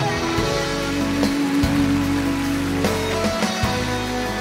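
Live pop band playing the instrumental introduction of a ballad: held chords with short drum hits a few times.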